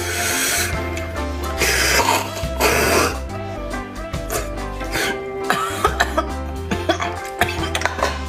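Three loud slurps as marrow is sucked out of cooked bone pieces, then a run of short wet smacking clicks of eating, over background music with a bass line.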